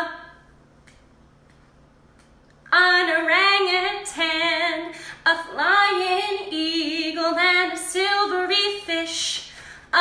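About two and a half seconds of quiet, then a woman singing unaccompanied: a lively children's action-song melody in short phrases, with a short hiss near the end.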